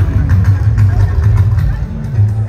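Live band music, heavy on the bass, with voices over it.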